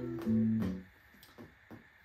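Music played through an Electro-Voice Everse 8 portable PA speaker, streamed from a phone, at a moderate volume. It cuts off suddenly about a second in, leaving near quiet with a few faint clicks.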